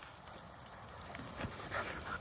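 Faint scuffling of dogs moving in long grass during a stick game, with a few soft clicks about a second in and near the end.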